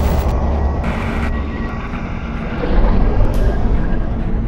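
Cinematic sound design: a deep, loud rumble with a rushing noise over it, like a jet passing, swelling again about three seconds in, with faint music under it.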